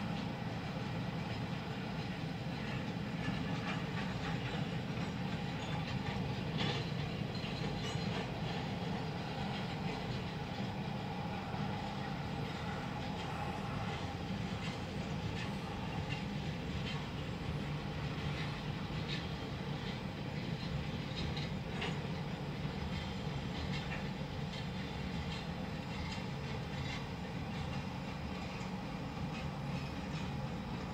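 Freight train of covered hopper cars rolling past a grade crossing: a steady rumble of the cars with scattered clicks of wheels over the rail joints.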